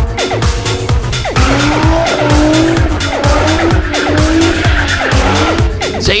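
Electronic dance music with a steady beat, mixed with race-car sound. From about a second and a half in, a car engine's note wavers up and down under tyre squeal as a car drifts.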